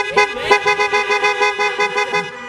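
Several car horns honking together in one sustained, steady chord, as approval from a parking-lot congregation.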